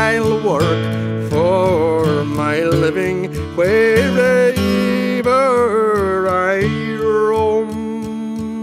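Plucked acoustic guitar accompanying a male voice that sings a wavering melody line. Near the end the voice stops and the guitar goes on alone.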